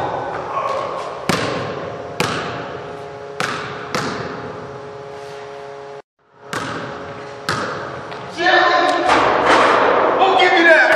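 A basketball bouncing on a hardwood gym floor: single bounces, unevenly spaced, each ringing out in the large hall. The sound drops out for half a second about six seconds in, and voices come in near the end.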